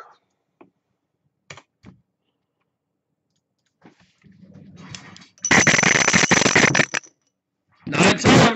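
A pair of dice shaken and rolled: a loud, dense clattering rattle lasting about a second and a half, starting about five and a half seconds in, after a soft rustle of handling. Two faint single clicks come about a second and a half in.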